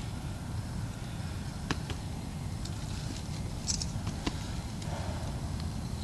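Steady low rumble of wind on the microphone, with a few faint clicks and rustles of small objects being handled, twice as sharp ticks and once as a soft rustle near the end.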